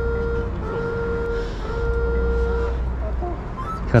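A motor vehicle's engine running steadily, a low rumble with a steady mid-pitched hum over it that stops near the end.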